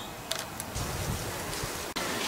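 Steady low hiss of background noise with a couple of faint clicks shortly after the start.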